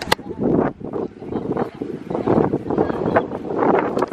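Strong gusty wind buffeting a phone's microphone, rising and falling unevenly, with a sharp click right at the start.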